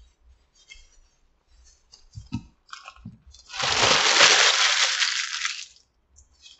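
A person chewing a mouthful of burrito with crunchy tortilla strips, giving small wet clicks and crunches. About three and a half seconds in, a loud rushing noise lasts about two seconds.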